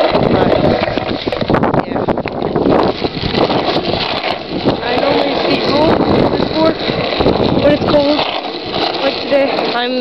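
Mini cruiser skateboard rolling over rough asphalt: a continuous gritty wheel rumble broken by frequent small clacks and knocks from the deck and trucks.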